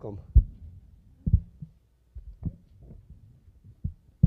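About five dull, low thumps at irregular intervals of about a second, from people walking up and settling in at the table, over a faint low room hum.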